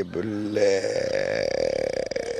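A man's voice holds a long, creaky hesitation sound of about two seconds, a drawn-out 'ehh' while he searches for his next words in mid-sentence. It comes right after a brief bit of speech.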